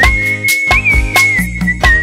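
Human whistling of a Tamil film song melody over an instrumental backing with a regular percussion beat. The whistle holds one long note with small bends, dipping a little lower in the second half.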